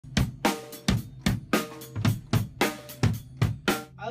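Drum kit being played: a steady beat of drum and cymbal strikes, nearly three a second, some with a short ringing tone, stopping just before the end.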